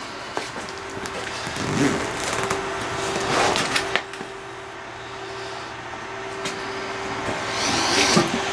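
Rustling and rasping of a grow tent's zippered reflective fabric flap being handled, in irregular scrapes, over the steady hum of a small electric fan running inside the tent.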